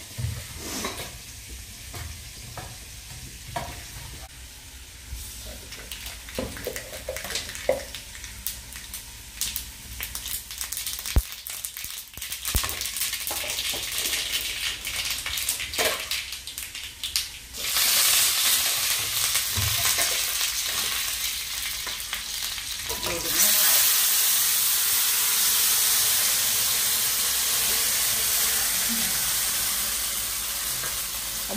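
Scattered clinks and knocks of kitchen utensils, then food sizzling in a hot iron kadai: the sizzle starts suddenly a little past halfway and jumps louder again a few seconds later, staying steady to the end.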